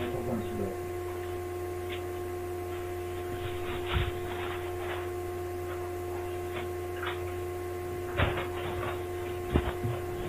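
Steady electrical hum made of several fixed tones, with a few short knocks and clicks over it, the loudest about four seconds in, just past eight seconds and near the end.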